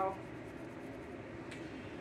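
Quiet room tone after a spoken word ends at the very start, with one faint click about a second and a half in.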